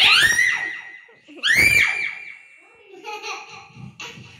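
A toddler's high-pitched squeals into a handheld microphone: one loud squeal at the start and another about a second and a half in, then a little quieter babble.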